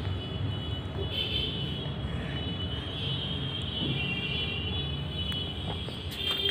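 Steady low background rumble and hiss, with a few faint light ticks.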